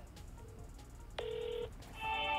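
Smartphone on speakerphone as an outgoing call is placed: a faint short beep about half a second in, then a louder half-second phone tone just after one second.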